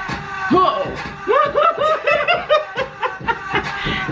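Women laughing, with a quick run of repeated 'ha-ha' bursts in the middle, over background music.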